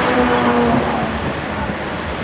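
A low, steady droning tone that dips slightly in pitch and stops under a second in, over wind noise on the microphone.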